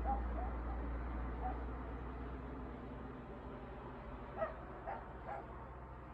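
A dog barking: a few faint short barks, then three sharper barks in quick succession about four to five and a half seconds in. Underneath, a low steady rumble dies away about halfway through.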